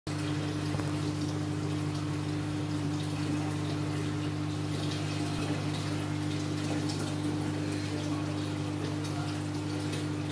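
Aquarium air stone bubbling, a steady fizz of bursting bubbles over a steady low hum.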